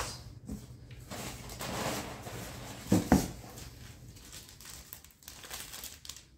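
Small plastic parts bag crinkling and rustling as it is handled and opened, with one brief louder noise about three seconds in.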